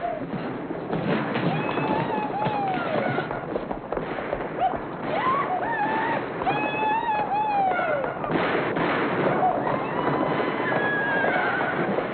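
Rowdy cowboys whooping and yelling in the street while firing guns repeatedly into the air, shots cracking through the shouting, with horses among them.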